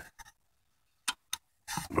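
Two short metallic clicks, about a quarter second apart and about a second in, from a slim ratchet wrench being fitted onto a fan bolt.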